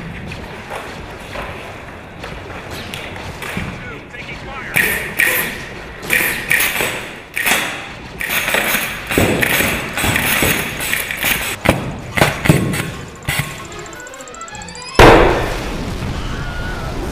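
A run of sharp bangs and thuds, then about a second before the end a sudden loud explosion: a practical pyrotechnic blast on a film set, throwing sparks and smoke.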